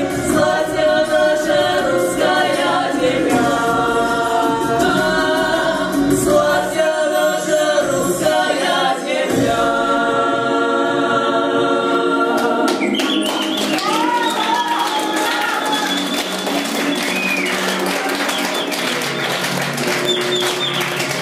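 Small folk vocal ensemble of women's voices and a young man's voice singing a song in harmony. About two-thirds of the way in, the texture changes and a higher voice glides above the others.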